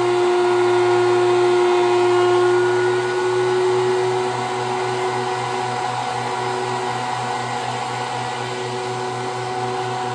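DeWalt benchtop thickness planer running steadily, a motor hum with a whine over it. The higher notes fade about three seconds in, and the overall level drops a little.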